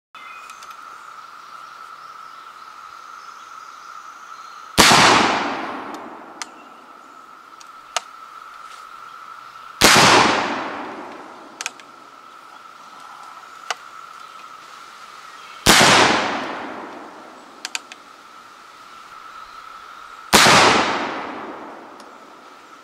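Four shots from a Pedersoli Model 1859 Sharps, a .54 black-powder percussion breechloader firing paper cartridges, about five seconds apart, each with a long echoing tail. Every cartridge goes off on the first cap, the cap's flame burning through the plain tissue-paper base. Small clicks come between the shots.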